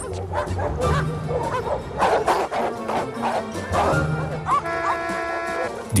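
Several dogs barking in an aggressive confrontation, with background music underneath.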